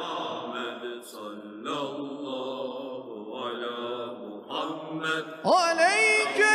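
Islamic devotional chanting, slow drawn-out sung phrases of praise on the Prophet (salawat). Near the end a voice slides steeply up into a louder held note.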